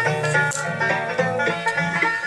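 Background music: quick plucked banjo notes in a bluegrass style.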